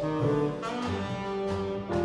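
Live jazz quartet playing: saxophone holding long notes over grand piano chords, upright bass and drums.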